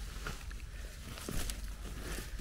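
Soft rustling with small crackles and light clicks of twigs and leaf litter on the forest floor, close to the microphone.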